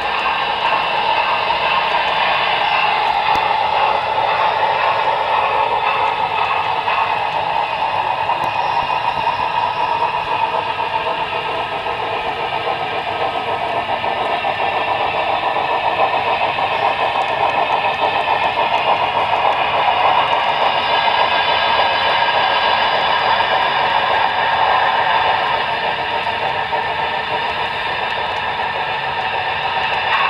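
A model steam locomotive and its freight cars running on model railroad track: a steady mix of motor hum and wheel clatter on the rails, growing a little louder and softer as the train moves along.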